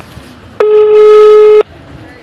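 A smartphone on loudspeaker sounding a call tone as an outgoing call is placed. It is a single loud, steady beep about a second long, starting and stopping abruptly.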